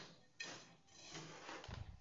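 Faint scraping and rustling of a hand scoop stirring a dry mix of crushed charcoal, soil and carbonized rice husks in a plastic tub, with a sharper scrape about half a second in.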